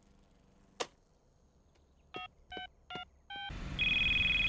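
Cartoon mobile phone being dialed: a click, then four short keypad beeps, each a different pitch. Near the end a steady low hum of a car interior comes in and the called phone starts ringing with a steady electronic tone.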